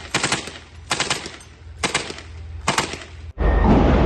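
Automatic rifle fire in short bursts of a few rapid rounds, about one burst a second. Near the end a much louder, unbroken din of fire sets in.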